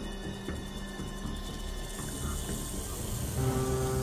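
Rattlesnake shaking its tail rattle, a dry hissing buzz that grows stronger about halfway through. Sustained background music comes in near the end.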